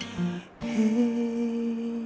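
A man singing one long held note, starting about half a second in, over acoustic guitar.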